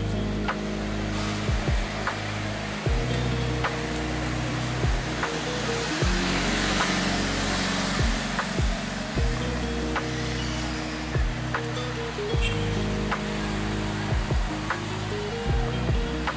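Background music with sustained low chords and a slow beat of deep, falling-pitch hits, over a steady hiss of street noise.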